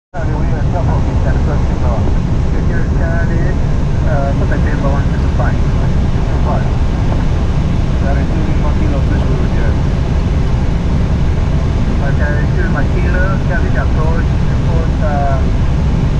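Steady flight-deck noise of an airliner in flight: a loud, even rush of airflow and engine drone, heaviest in the low end, heard from inside the cockpit. Muffled voices come and go over it.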